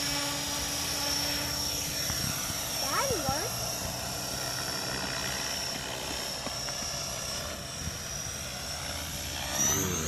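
Align T-Rex 500 electric RC helicopter flying, its steady high whine from motor and drivetrain over the whir of the rotor blades; the whine rises in pitch near the end.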